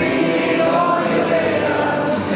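A song played live on acoustic and electric guitars, with a voice singing a melody over them.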